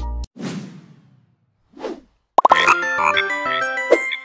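A backing beat cuts off just after the start and is followed by two whoosh sound effects. About two and a half seconds in, a short, bright logo jingle opens with a few quick pops and a run of short high notes.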